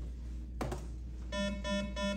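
School public-address intercom: a click as the system opens, then a run of short repeated beeps, about three a second, the alert tone that comes before an announcement.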